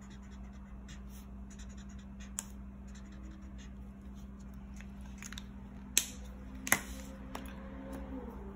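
Felt-tip marker scratching on paper in many short, quick strokes. Near the end come two sharp plastic clicks as the markers are handled and set down.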